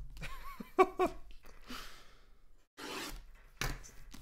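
A man's short laugh and a breathy exhale, then light knocks and rustles of hands handling a cardboard box on a table, with a sharp click near the end.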